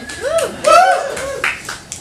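A few scattered handclaps, sharp and separate, over a person's voice in the first second.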